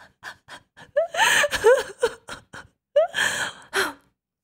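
A woman laughing wordlessly: a few short breathy huffs, then two longer breathy bursts of laughter with gasping breaths.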